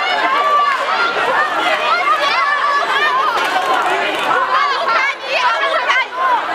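Many people shouting and talking over one another at once, a continuous tangle of raised voices with no single speaker standing out.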